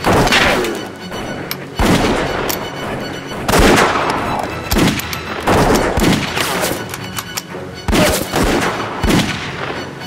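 A volley of rifle gunshots in a shootout: about eight shots, roughly a second apart, each a sharp crack with a long echoing tail.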